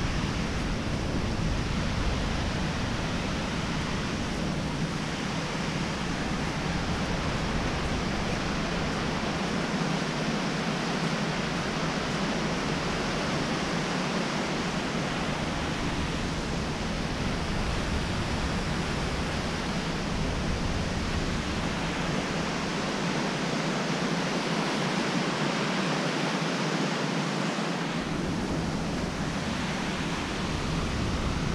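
Steady rush of a creek's water tumbling over rocks in a canyon below, an even hiss that does not let up.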